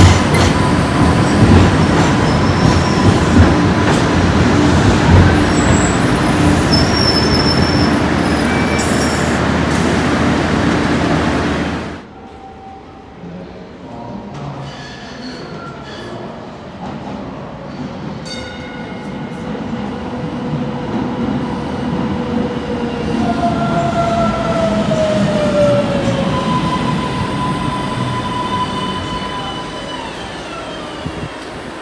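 A Green Line Breda Type 8 light-rail train runs loudly past an underground platform with a steady high whine over its rumble. About twelve seconds in the sound cuts off abruptly, and another light-rail train is heard approaching through the tunnel, growing louder, its wheels squealing in falling tones as it slows into the station.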